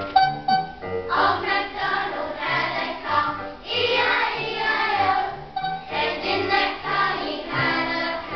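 A group of young children singing a song together, with instrumental backing under the voices.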